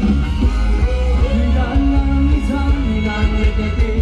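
A Thai ramwong dance band playing through loud amplification, with a singer over a steady beat and heavy bass.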